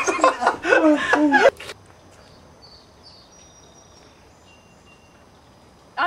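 A voice laughing and talking for about the first second and a half, then faint outdoor background noise with a few short, faint high chirps.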